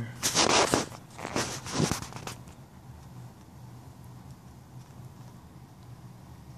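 Two loud bursts of rustling and brushing handling noise in the first couple of seconds as the recording device is moved about, then a steady low hum for the rest.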